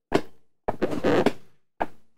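Baby Design Amigo Racing child car seat being reclined by hand: a sharp plastic knock, a rough creaking slide of about a second, then another knock as the seat shell shifts between its recline positions.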